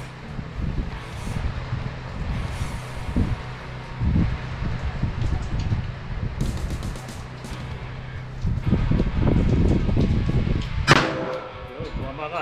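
A single handgun shot about eleven seconds in, sharp with a short ringing tail, over a steady low rumble.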